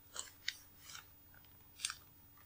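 Four short, crisp clicking sounds close to the microphone: three in the first second and one near the end.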